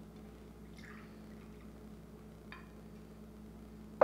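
Faint trickle of vodka poured from a bottle into a small shot glass over a steady low room hum, with a faint tap about two and a half seconds in.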